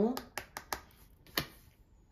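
A few sharp, light clicks of a tarot card and long fingernails against the card and a wooden tabletop as the card is set down; the loudest comes about one and a half seconds in.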